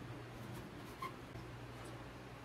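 Faint rustling and a few soft ticks of hands handling stuffed pita bread, over a steady low hum.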